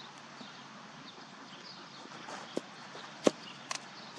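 Sharp crack of a cricket bat striking the ball about three seconds in, with a lighter knock just before it and two faint knocks soon after, over steady outdoor background noise.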